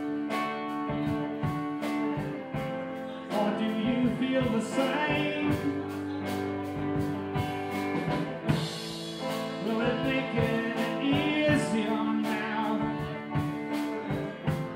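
A live rock band playing a song: guitars and a drum kit keeping a steady beat, with a man singing over them.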